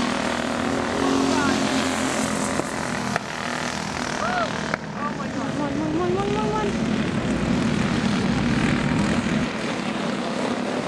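Small go-kart engines running at race speed, a steady buzz as the karts circle the track. Spectators' voices call out briefly around the middle.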